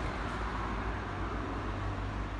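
Steady low rumble and hiss of city street background noise, with no distinct event standing out.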